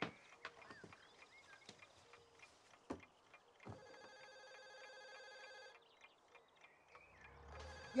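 A telephone ringing: one steady electronic ring lasting about two seconds, starting a little under four seconds in. A few light clicks and knocks come before it.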